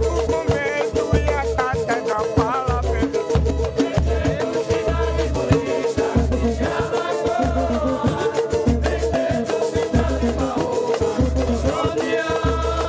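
Brazilian batucada group playing samba-style music live: pandeiro, cavaquinho and acoustic guitar over a steady, deep bass beat, with voices singing.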